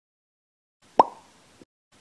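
A single short, bright 'plop' sound effect about a second in: a sharp pop with a quick upward blip in pitch that dies away within half a second.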